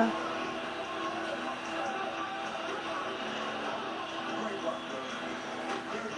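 Faint background voices and music, with no close speech and no distinct sound events.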